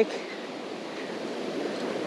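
Ocean surf breaking and washing up the beach: a steady rushing hiss that builds slightly.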